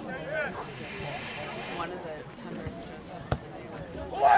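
Spectators' scattered voices and a high hiss lasting about a second, then a single sharp thud of a soccer ball being kicked, a free kick struck into the penalty area, near the end.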